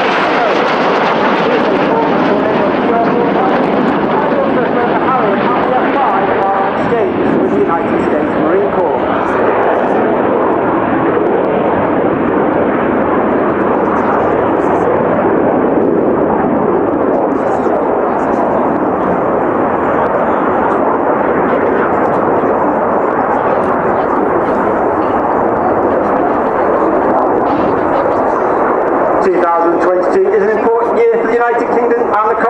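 A formation of BAE Hawk T1 jets with Adour turbofan engines flying past, giving steady, loud jet engine noise. A voice starts near the end.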